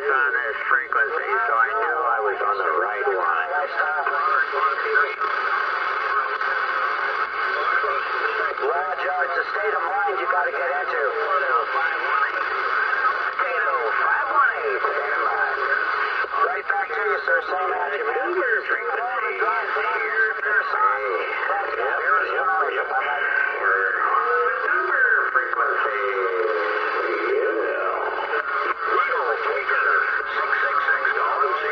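Lower-sideband voice traffic received on a Uniden Bearcat 980SSB CB radio on channel 38, heard through its speaker: several distant stations talking over one another, garbled, over a steady band hiss.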